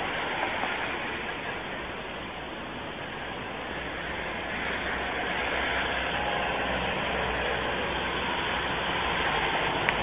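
Steady rumble of a passing vehicle, its low end growing stronger about halfway through.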